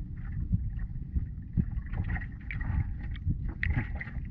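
Wooden outrigger boat moving slowly on calm sea: a steady low rumble of wind on the microphone and water along the hull, with a few light knocks.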